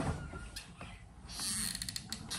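Low room hum with a few faint clicks and rustles, most near the end, from a hot glue gun being squeezed and the paper strip it is gluing being handled.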